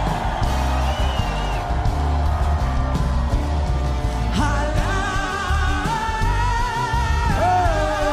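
Live praise and worship music with a heavy bass and singing; about halfway in, voices enter holding long, wavering notes.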